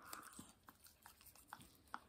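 Near silence with a few faint, scattered clicks and scrapes of a toothbrush working over a dog's teeth.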